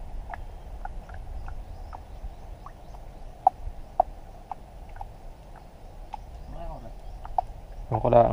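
Sparse light knocks and clicks, roughly one or two a second and irregular, over a low steady rumble, with a short faint pitched call about two-thirds of the way in.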